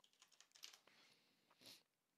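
Faint typing on a computer keyboard: a scatter of soft keystrokes, with one louder press about a second and a half in.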